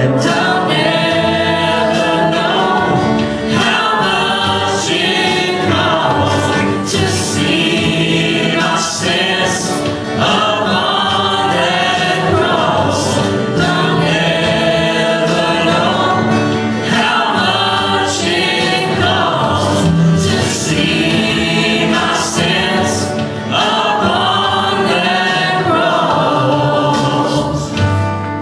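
A church praise band performing a gospel worship song live: several men and women singing together into microphones, with guitar accompaniment.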